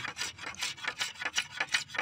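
A curved sickle blade scraping along a dry bamboo pole in quick, repeated strokes, about four a second, shaving the wood.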